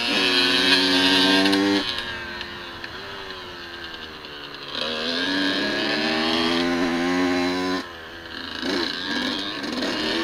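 Dirt bike engine under way, revving up and backing off with the throttle: strong for the first two seconds, easing off, picking up again about five seconds in, dropping briefly near eight seconds, then climbing again.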